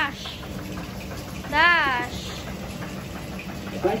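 A young child's high, wordless sing-song call, rising then falling in pitch, once about a second and a half in, over a steady low background hum.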